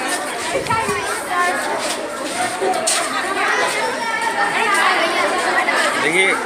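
Several voices talking at once: indistinct chatter of overlapping voices, with no single speaker standing out.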